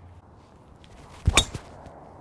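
Golf driver striking a ball off the tee: a single sharp crack about a second and a half in.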